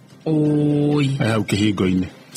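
A person's voice holding one long syllable at a level pitch, drawn out like a chant, then breaking into a few quick spoken syllables.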